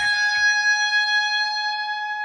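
ESP electric guitar: one note at the 16th fret of the high E string, bent up a quarter step and held, ringing steadily and slowly fading.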